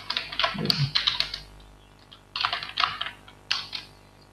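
Computer keyboard typing in quick bursts: a run of keystrokes over the first second or so, a pause of about a second, then two shorter bursts.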